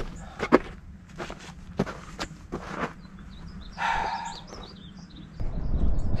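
Work boots crunching over rocky, gravelly dirt, several uneven steps in the first three seconds, with birds chirping faintly around the middle.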